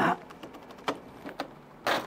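An ice pick tapping and prying at thick ice packed in a freezer: a few sharp, separate clicks, then a short scraping crunch near the end as the frozen block starts to come loose.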